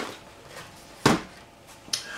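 A single short knock about a second in, from an item being handled and set on a table, with a small click near the end.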